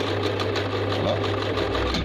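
Lervia portable sewing machine running: the electric motor's steady hum with fast mechanical chatter from the needle drive, the hum deepening near the end. The motor is not turning as it should, a fault the repairer puts down to the motor.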